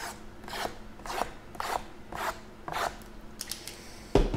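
A hand rubbing back and forth over shrink-wrapped cardboard card boxes: six rasping strokes, about two a second, then a few light clicks near the end.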